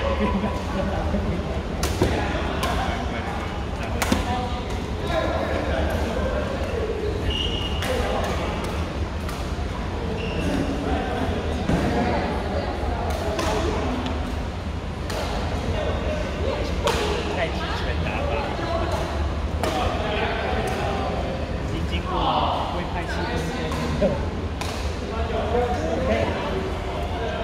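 Badminton rackets striking shuttlecocks in irregular rallies across several courts, sharp cracks at uneven intervals mixed with players' footfalls, over continuous chatter echoing in a large sports hall.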